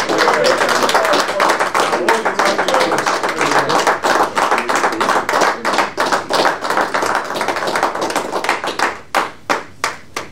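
Audience clapping steadily, dense and continuous, then thinning to a few last separate claps and stopping just before the end.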